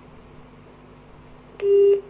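Telephone line tone on the phone-in call: a single steady, low-pitched beep about a third of a second long near the end, over a faint steady hum on the line.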